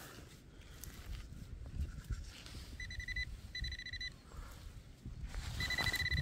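Handheld metal-detecting pinpointer beeping in short bursts of rapid pulses, about three seconds in, again a second later, and near the end, signalling metal in the soil as the probe nears the target. In between, gloved hands rustle and crumble the loose soil.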